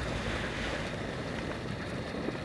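Steady wind noise on the microphone.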